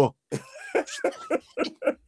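A man laughing in a run of short, even bursts, about four a second.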